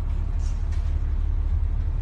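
Steady deep rumble with a faint hiss above it: storm seas breaking over and along a tanker's deck as the ship ploughs through heavy weather.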